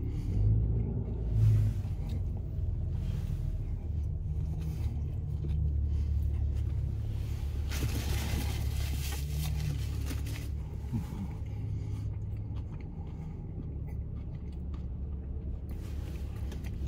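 Low, steady vehicle engine rumble heard from inside a car cab, with a couple of soft low thumps near the start and a brief hiss lasting about two seconds around the middle.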